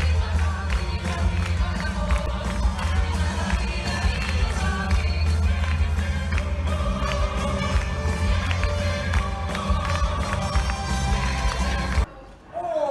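Live stage-musical number heard from the audience of a theatre: loud music with a heavy, boomy bass beat and the cast singing. It cuts off abruptly at the end.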